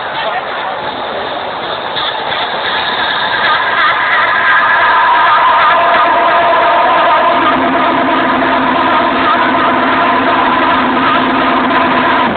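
Loud arena sound from a dance-music show: a sustained synthesizer chord held over dense crowd noise, with no beat. A lower held note joins about seven seconds in.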